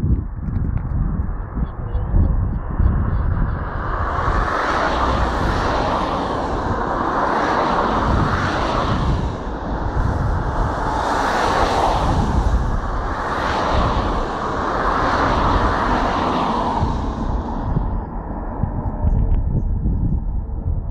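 Class 66 diesel locomotive approaching slowly, its engine and wheels giving a pulsing hiss that swells about four seconds in and fades out near the end. Wind rumbles on the microphone.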